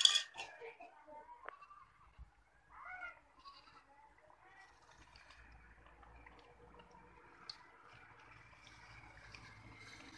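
A sharp click right at the start, then a farm animal bleating faintly twice in the first few seconds, over a faint steady background hiss.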